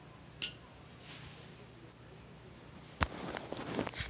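Quiet room tone with a single sharp tick about half a second in, then near the end a loud knock followed by clicks and rustling: a phone being picked up and handled, the noise landing right on its own microphone.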